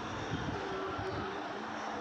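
Steady roadside traffic noise from passing motor vehicles on a main road.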